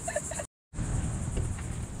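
Steady, high-pitched pulsing chorus of insects. It drops out abruptly about half a second in and resumes over a low rumble.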